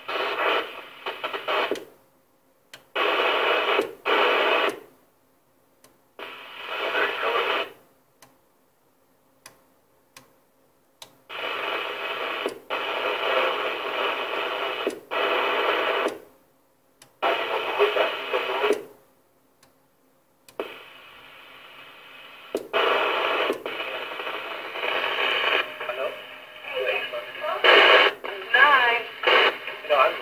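CB radio transmissions heard through the receiver's speaker: narrow, tinny bursts of garbled voices, each one switching on and off abruptly with silent gaps between them as the squelch closes. A longer stretch of continuous transmission fills the last several seconds.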